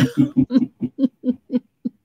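A person laughing: a run of short, pitched 'ha-ha' pulses, about five a second, growing fainter toward the end.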